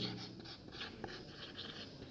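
Marker pen writing on a whiteboard: faint, short scratchy strokes as a word is written out.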